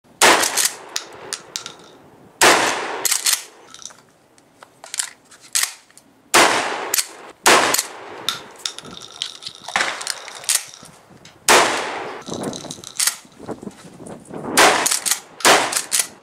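Remington 870 Express Magnum 12-gauge pump-action shotgun firing about seven shots at irregular intervals, some about a second apart, each with a short echoing tail. Between shots come smaller clacks of the pump slide being racked to eject the spent hull and chamber the next shell.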